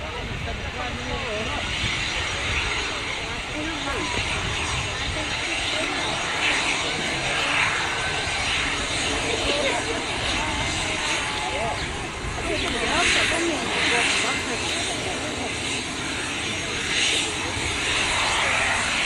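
Embraer Legacy 500 business jet taxiing on its twin Honeywell HTF7500E turbofans at idle power: a steady jet whine over a broad rumble.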